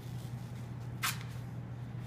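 Athletic tape being worked around an ankle: one brief rasp of tape about a second in, over a low steady hum.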